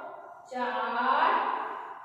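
A woman's voice in a long, drawn-out phrase that starts about half a second in and fades away toward the end.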